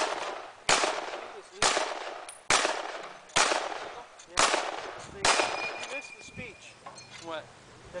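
M1 Garand rifle firing blanks in semi-automatic: seven sharp reports roughly a second apart, each trailing off in a short echo. After the last shot, about five seconds in, a high ringing ping lasting about a second: the empty en bloc clip ejecting.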